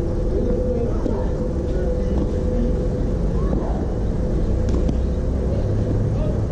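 Outdoor ambience by a tennis court: a steady low rumble with faint, distant voices, and a faint steady hum that fades out about halfway through.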